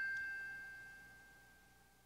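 A bell-like chime note ringing out and fading away, the tail of a short three-note chime; a single clear high tone that dies down steadily.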